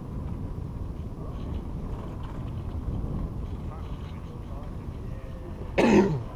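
Steady low wind rumble on the microphone of an open chairlift chair riding up the line. Near the end comes one loud, brief sound that sweeps quickly down in pitch as the chair nears a lift tower.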